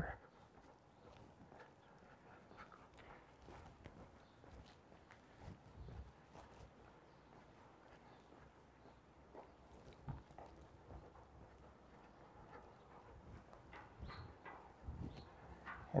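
Near silence: quiet street ambience with a few faint, brief knocks and sounds, the clearest about ten seconds in.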